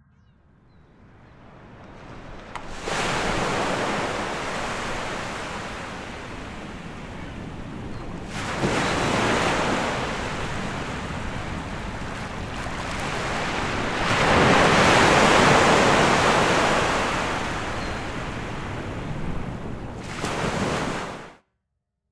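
Ocean waves washing in on a shore, fading up at first and then swelling in four surges, the biggest about two-thirds of the way through, before cutting off suddenly near the end.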